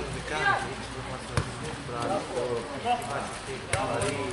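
Men's voices calling and shouting across a football pitch, with two sharp thuds of a football being kicked, one about a second and a half in and one near the end.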